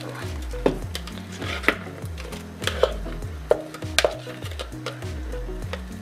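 Background music with a steady repeating bass line, over several sharp knocks about a second apart from a spatula scraping and tapping against a plastic food processor bowl as the blended seasoning paste is emptied into a pot.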